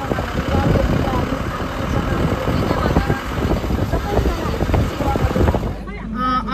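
Road and engine rumble of a moving passenger vehicle heard from inside the cabin, cutting off abruptly near the end.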